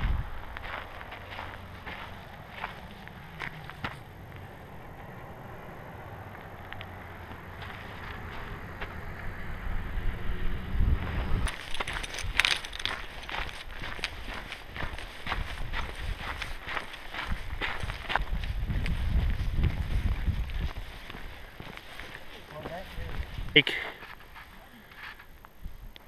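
Footsteps of a person walking on pavement and a gravel path, about two steps a second, picked up by a body-worn camera. Wind buffets the microphone in gusts, with a sharp click near the end.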